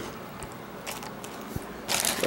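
Faint clicks and rustles of a plastic tub and food being handled, then a loud crinkle of a plastic bag near the end.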